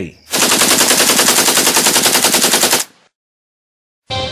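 Machine-gun fire sound effect: one continuous rapid burst of about ten shots a second, lasting about two and a half seconds and cutting off suddenly.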